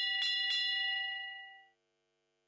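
Bell struck a few times in quick succession, several bright tones ringing out and dying away within about a second and a half, then silence. It is most likely the judge's start bell signalling the next show jumping rider to begin the round.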